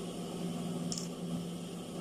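Steady electric hum of an idling industrial sewing machine motor, with a brief rustle of fabric being handled about a second in.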